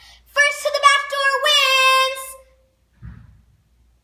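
A young girl singing a short wordless phrase, ending on a long held note that sags slightly before fading. About three seconds in there is one soft, low thump.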